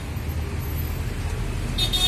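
Steady low rumble of a running motor engine, with a brief hiss near the end.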